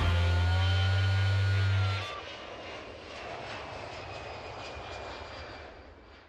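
A loud held low note cuts off about two seconds in. After it comes an airplane flyby sound effect, a quieter steady rushing wash that fades out near the end.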